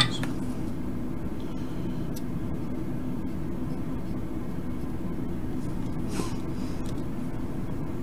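A steady low hum of background noise at the workbench, with a few faint ticks and a brief soft rustle about six seconds in.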